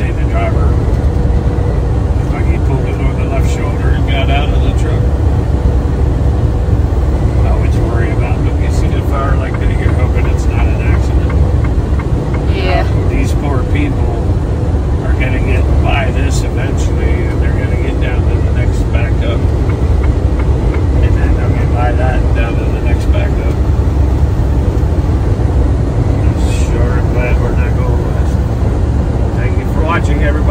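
Steady low road and engine rumble inside a vehicle's cab cruising at highway speed, with scattered faint short sounds above it.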